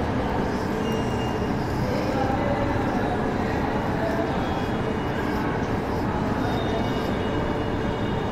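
Steady background noise with a low rumble, even in level, like mechanical or traffic noise picked up by the recording microphone.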